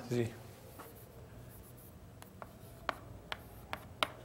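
Chalk writing on a blackboard: a run of short, sharp taps and strokes as the chalk hits and leaves the board.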